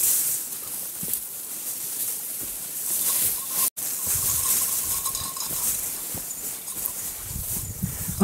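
Rustling and footfalls of a hiker pushing through dense Japanese stone pine scrub over a steady high hiss; the sound drops out for an instant a little before the middle.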